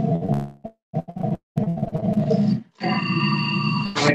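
Food processor motor pulsing through a thick tahini-and-lemon paste: three short bursts, then a longer steady run that adds a higher whine.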